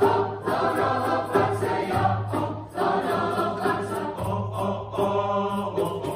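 Mixed youth choir singing in several-part harmony, a low held bass note under the upper voices, with light hand percussion keeping a steady beat.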